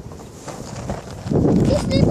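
Handling noise on the microphone: scattered knocks, then a loud rumbling rub from just over a second in, with a high child's voice rising near the end.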